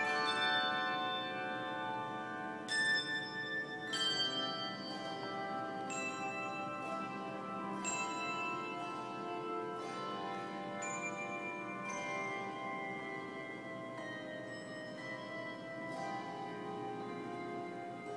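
Handbell choir playing a piece: chords of bells struck together that ring on and overlap, with a new chord every second or two.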